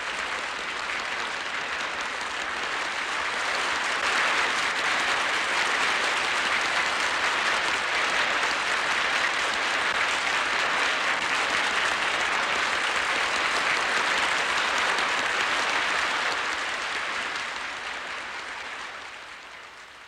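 Audience applauding. The clapping swells over the first few seconds, holds steady, and fades away near the end.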